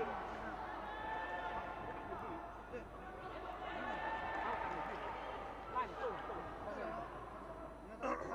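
Several voices talking indistinctly over one another, with general arena chatter.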